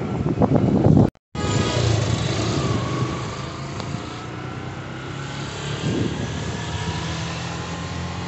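Yamaha motorcycle engine running as the bike rides through traffic, heard from the pillion seat with wind noise on the microphone. The sound cuts out briefly about a second in, then the engine note rises slowly.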